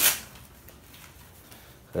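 A brief rustling bump as a plastic-wrapped rolled mattress is handled on a wooden slatted bed base, then a quiet room.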